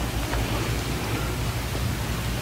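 Steady, even hiss with a low hum underneath and no distinct events: the background noise of the sanctuary recording.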